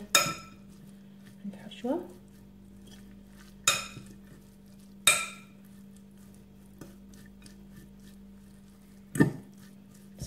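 A metal fork clinks against a glass mixing bowl while stirring a moist filling. There are four sharp clinks spaced unevenly, each ringing briefly.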